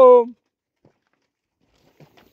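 A man's voice calling cattle: the tail of the last of four short, steady, sung calls, which ends a third of a second in. Faint ticks follow.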